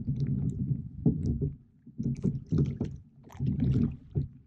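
Water gurgling and slapping against the stern of an inflatable rowboat as it is rowed, coming in uneven surges about once a second with small splashes and clicks.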